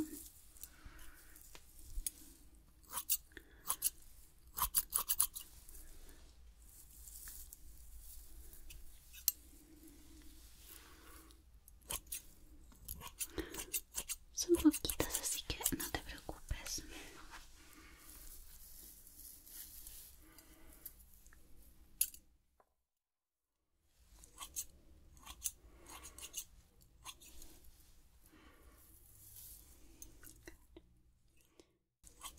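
Hairdressing scissors snipping the ends of a lock of hair close to the microphone, trimming off damaged ends. The snips come in short clusters, with a complete drop-out to silence for about two seconds near 22 seconds in.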